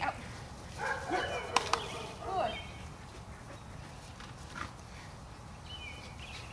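A dog barking and yipping a few times in quick succession, from about a second in until halfway through; the rest is quiet outdoor background.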